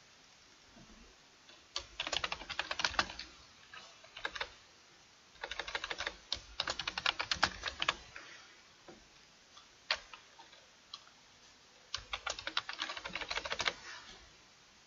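Typing on a computer keyboard in three quick runs of keystrokes, with a couple of lone key taps between the second and third runs.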